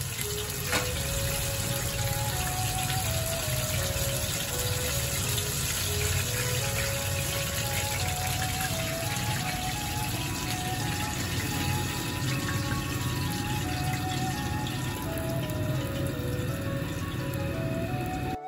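Hot oil sizzling steadily as scale-on tilefish pieces deep-fry in the final, hotter fry that crisps the scales. Background music plays over it, a simple melody of single notes.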